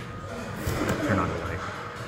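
Faint, indistinct speech, quieter than the narration, over a steady low background hum.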